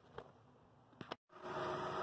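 A few faint handling clicks, then, after an abrupt cut about a second in, the steady low hum of a 1996 Toyota Camry's 2.2-litre four-cylinder engine idling under the open hood.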